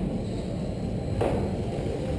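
1/10-scale electric RC race cars running on an indoor track, heard as a steady hum in a large echoing hall, with one sharp knock about a second in.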